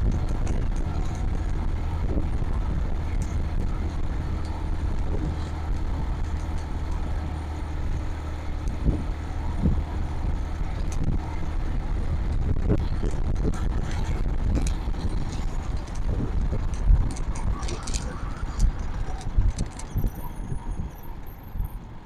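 Motorcycle engine running steadily while riding, with wind and road noise on the microphone; near the end the engine eases off and the sound drops and becomes uneven as the bike slows for a red light.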